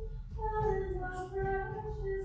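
A high voice sings a slow hymn in long held notes, with a short break for breath just after the start.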